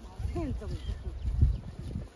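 Faint talking with low thumps and rustling of rapeseed stalks as people move through the plants picking them; the loudest thump comes about one and a half seconds in.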